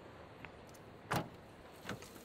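Car door opened by its outside handle: a sharp latch click about a second in, then a second, softer click as the door swings open, over a faint steady background.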